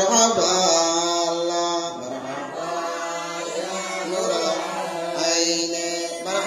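A man chanting a qasida, a religious praise poem for the Prophet Muhammad, into a microphone, in long held melodic phrases.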